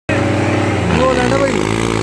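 New Holland 3630 tractor's three-cylinder diesel engine running steadily under heavy load, with voices from the crowd calling out over it about a second in.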